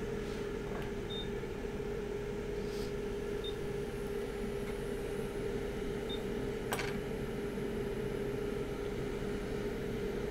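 Steady fan hum with an even air hiss from a hot air rework station blowing on a chip being soldered to a circuit board. Three faint short beeps come through, and a single click about two-thirds of the way in.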